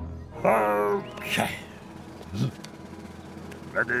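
A man's wordless vocal noises from a cartoon character: a long wavering sound about half a second in, then two shorter ones, with a spoken "Go" at the very end.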